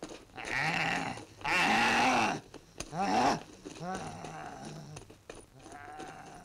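Long, wavering, drawn-out cries, animal-like: three loud ones in the first half, then fainter ones.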